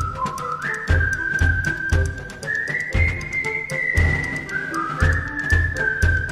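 Background music: a high whistled melody that steps and glides between notes, over a steady drum beat with light ticking percussion.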